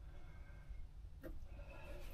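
Quiet, with a low rumble from the hand-held camera and one faint click a little over a second in.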